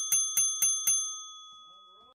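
A small bell rung in quick repeated strikes, about four a second, stopping about a second in and ringing on as it fades away.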